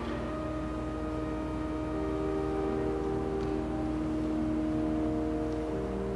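Slow church organ music: held chords that move to new notes every second or two.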